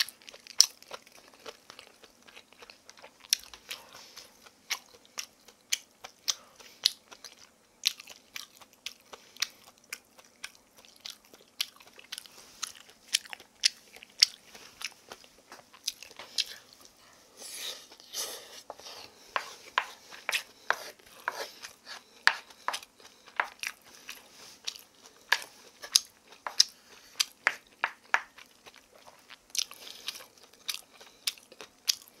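Close-miked eating sounds: a mouthful of namul bibimbap being chewed, with many sharp, irregular clicks, and a wooden spoon mixing rice and vegetables in a wooden bowl.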